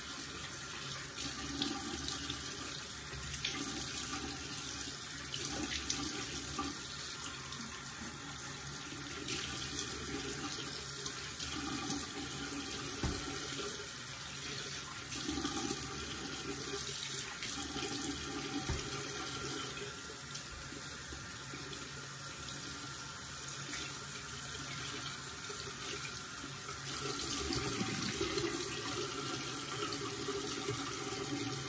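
Bathroom sink tap running steadily, with water splashing unevenly as a face is washed under it.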